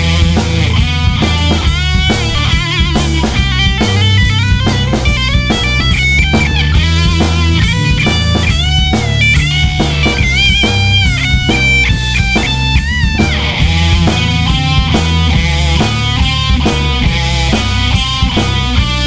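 A heavy rock band plays an instrumental passage: a Les Paul-style electric guitar plays a lead line full of bent notes over bass and a drum kit with cymbals. About thirteen seconds in, the lead slides down and gives way to thick chords.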